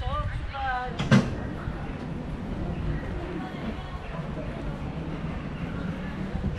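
Outdoor street ambience: a person's voice briefly at the start, a single sharp knock about a second in, then a steady low murmur of the surroundings.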